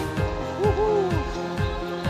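Background music with a steady beat of about two kick-drum hits a second under sustained notes. Two short swooping tones rise and fall about half a second in.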